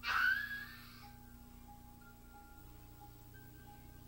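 Film soundtrack playing from a television across a small room. It opens with a sudden rushing sound effect lasting about a second, then soft music with long held notes.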